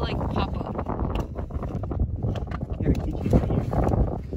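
Wind rumbling on the microphone, with a few light clicks and knocks partway through.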